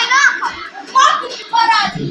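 Children's high-pitched voices shouting and squealing in short bursts, the way children sound at play, in a small room.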